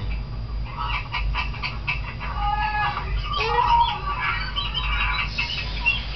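Hawk-headed parrot calls: a few sharp clicks in the first second and a half, then short squeaky calls and squawks.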